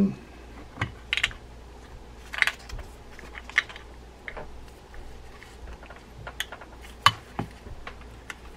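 Scattered small clicks and taps of metal reel parts being handled as the main gear is fitted into a D.A.M. Quick 441N spinning reel's housing, with the sharpest click about seven seconds in.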